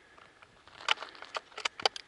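Footsteps crunching on dry ground: a quick, irregular run of sharp crackles and clicks starting about a second in.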